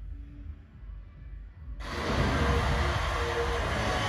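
Karaoke machine's results-announcement effect: a low rumble, then about two seconds in a loud rushing sound cuts in and holds, with music mixed in.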